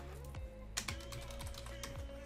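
Typing on a computer keyboard: a quick run of keystrokes in the second half, over quiet background music with a steady beat.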